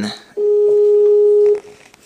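Skype outgoing-call ringing tone from a computer: one steady, level tone a little over a second long, followed by a pause. The call is ringing and has not yet been answered.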